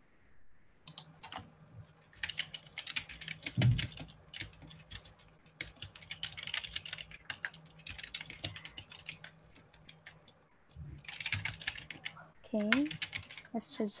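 Fast typing on a computer keyboard in several bursts of quick key clicks, with one low thump about four seconds in. Near the end a voice makes a few short sounds.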